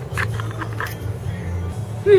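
Background music with a steady low bass line, with a few short clicks in the first second.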